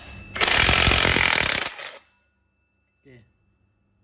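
Cordless impact wrench with a 39 mm socket rattling in rapid hammering blows for about a second and a half, breaking loose the centre nut of a scooter's clutch and torque-drive assembly, then stopping.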